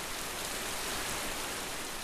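A steady rushing noise, like falling rain, that swells to its loudest about a second in and then begins to fade.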